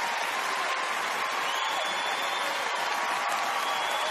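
Large theatre audience applauding steadily in a standing ovation.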